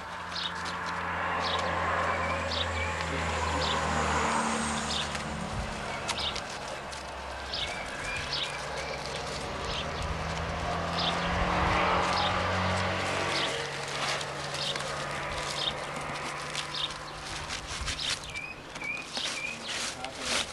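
Motor vehicles passing nearby: a low engine hum with road noise that swells and fades, once near the start and again about twelve seconds in. Small birds chirp on and off.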